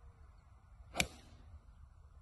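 Golf club striking a ball on a full swing: one sharp crack about a second in, with a short trailing hiss.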